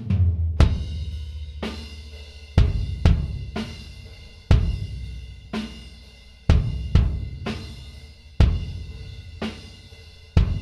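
A soloed kick drum track miked with a Neumann U87 plays back, its kick hits coming in a steady groove, some in close pairs. The whole kit bleeds in, with snare, hi-hat and cymbals plainly heard: a lot of bleed and not very much definition, a poorly isolated kick recording.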